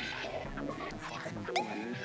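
Live electronic music: a busy texture of small warbling, squeaking pitch glides, with a sharper curved chirp about one and a half seconds in.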